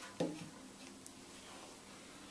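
A single short knock on wood with a brief ring, then a faint tick about a second in: handling of the wooden dowel and neck as the dowel is tapped in.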